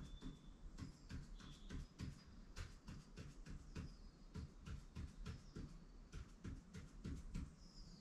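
Faint ink pen strokes on paper as short tally marks are drawn one after another, a quick irregular scratch-tap about two or three times a second, with the pen tip giving a faint high squeak now and then.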